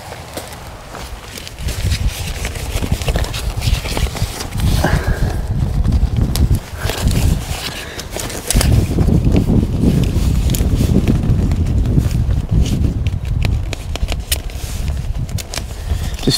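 Fabric of a camouflage photography hide rustling and flapping as its roof canopy is handled, with irregular clicks of tent poles being fed through a seam sleeve, over a low rumble that strengthens about halfway through.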